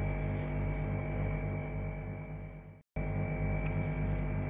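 Steady low electrical hum with a faint buzz pulsing about four times a second, and no speech. The hum fades and cuts out to silence for an instant just before three seconds in, then returns.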